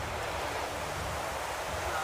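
Rain falling steadily, a constant even hiss with no distinct drops or other events.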